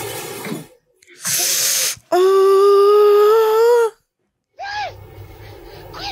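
Horror film soundtrack: a brief breathy hiss, then a loud held tone lasting nearly two seconds with a slight waver, then a short rising-and-falling note and a low rumble near the end.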